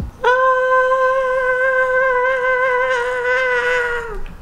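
A woman's voice holding one long sung note, steady in pitch, with a slight waver near the end before it drops away.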